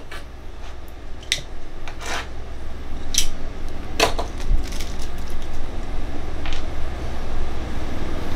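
Small hardware and PVC fittings handled on a workbench: scattered clicks and light knocks, about half a dozen, over a steady low hum.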